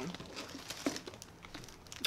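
Paper food wrappers crinkling as wrapped burgers are handled, with a few small clicks.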